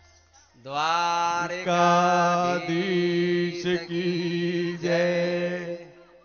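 A man's voice chanting into a microphone in long held notes at a steady pitch. It begins about half a second in with a slight upward slide and pauses briefly between phrases, stopping just before the end.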